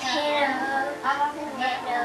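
A small child singing along with a musical number playing on a television, with the song's music behind her voice.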